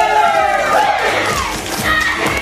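Shouted, drawn-out voice calls that slide down in pitch, over music.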